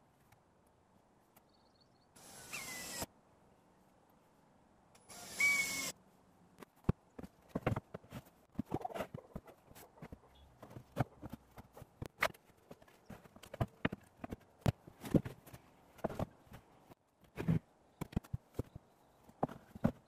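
Cordless drill running in two short bursts of about a second each, a few seconds apart, driving screws into treated pine roof planks. After that comes a long run of irregular wooden knocks and clacks as the planks are handled and set in place.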